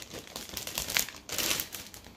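Clear plastic packaging around a Swedish dishcloth crinkling as it is handled, in a few short, irregular rustles.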